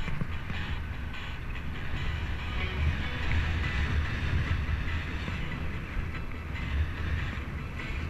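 Wind buffeting the microphone of a camera on a moving bicycle, a steady low rumble, with tyre and road noise underneath.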